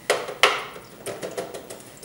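Two sharp knocks about a third of a second apart, then a few lighter clicks and taps: painting gear (brush and mahl stick) knocking against the canvas and easel.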